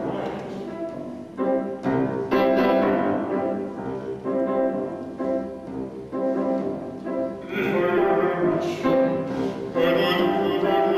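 Grand piano playing a song's introduction: struck chords and short melodic phrases, fuller and brighter over the last couple of seconds.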